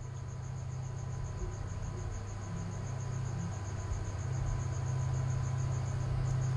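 Quiet background with a steady low hum and a faint high-pitched chirp repeating evenly about five times a second.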